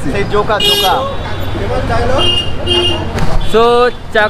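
People talking on a busy city street over traffic noise. A vehicle horn toots briefly about half a second in, and there are two more short beeps in the middle.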